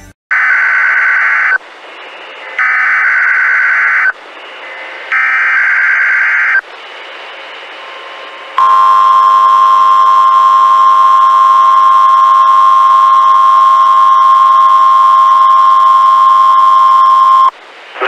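Three loud, harsh data bursts of an Emergency Alert System SAME header, each about a second and a half long and about a second apart, with hiss between them. They are followed by the National Weather Service's weather-radio warning alarm tone: one steady, loud tone held for about nine seconds that cuts off sharply.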